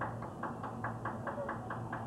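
An even run of about ten short, sharp clicks, about five a second.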